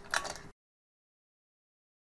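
A short burst of noise, then the sound cuts off abruptly half a second in and stays completely silent.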